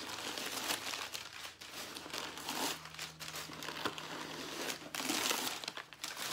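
Crumpled paper stuffing crinkling and rustling as it is pulled out of a leather purse, a continuous crackle that gets a little louder near the end.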